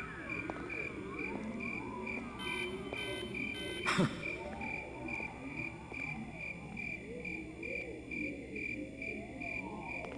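Night ambience of chirping crickets: a steady high chirp pulsing a few times a second, over frogs croaking lower down. A single sharp knock comes about four seconds in.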